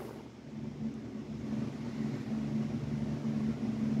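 Steady low background hum with faint room noise.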